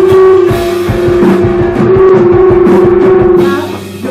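Live three-piece rock band of electric guitar, bass guitar and drum kit playing loud, with a long held note over busy drumming. The volume drops away near the end.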